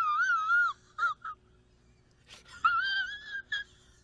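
A man whimpering in a high, wavering falsetto: one wobbling wail at the start and a second, shorter one about two and a half seconds in, with a brief gap of quiet between.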